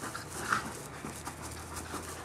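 A small dog breathing hard in short puffs as it noses a ball along the grass.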